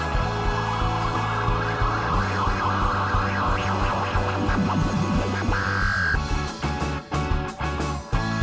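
Indie rock band music: a full band playing near the close of a song, with a noisy layer swelling in the middle range. In the last two seconds the band breaks off briefly several times, in stop-start hits.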